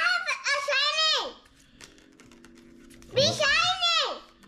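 A young girl's voice in two high-pitched, drawn-out exclamations that rise and fall in pitch: the first in the opening second or so, the second near the end.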